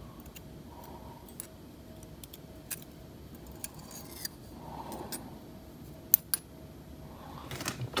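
Faint, scattered small metallic clicks and ticks from steel tweezers and tiny lock parts being handled while pin springs are fitted back into a Tesa T60 cylinder, with the sharpest, a quick double click, a little after six seconds.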